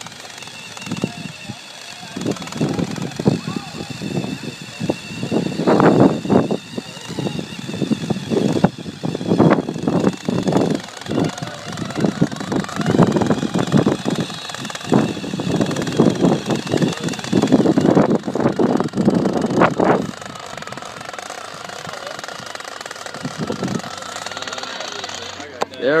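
Small brushed-motor electric RC car driving over cracked asphalt: a faint steady motor whine under irregular rattling and clatter, which drops to a quieter run about twenty seconds in.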